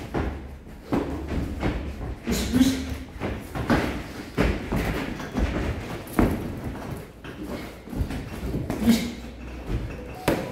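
Boxing gloves striking during sparring: irregular padded thuds of punches landing on gloves and body, about one every second, with short breaths or grunts between.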